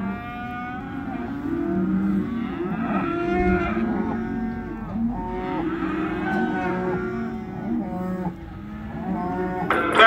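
Cattle in the sale-yard pens mooing, several animals calling over one another with no break.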